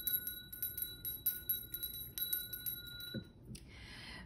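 Small brass hand bell rung, its clapper striking repeatedly under a clear ringing tone that stops a little over three seconds in.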